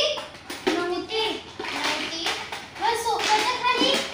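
Children's high voices talking and calling, over short clacks and clatter of plastic toys being rummaged in a plastic basket.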